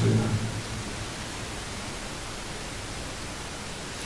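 A man's voice trails off in the first half second, then a steady, even hiss of recording noise fills the pause.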